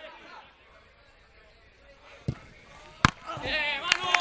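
A football struck twice on the pitch: a dull thud about two seconds in and a sharp crack about a second later. Players then shout loudly.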